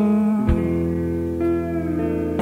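Live slowcore band playing slowly, with guitar chords ringing on at length. About half a second in the chord changes, with a low thump.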